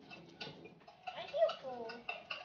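Forks clicking and scraping against cake plates in short, scattered clicks. A voice speaks briefly in the second half and is the loudest sound.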